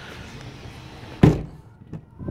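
The separately opening rear glass of a 2015 Honda Pilot's tailgate being shut, making a single thunk a little over a second in.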